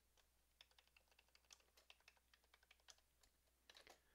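Faint computer keyboard typing: a run of short, irregular key clicks.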